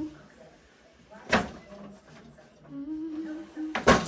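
Two loud thumps, about two and a half seconds apart, as a box is slid down wooden pull-down attic stairs and bumps on the steps.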